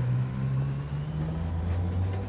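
Low droning tones from a film soundtrack, a steady deep hum that drops a little lower in pitch about a second in.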